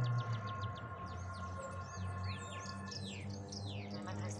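Small birds chirping repeatedly, many quick sweeping calls, over a steady low hum and a few held tones that stop about three seconds in.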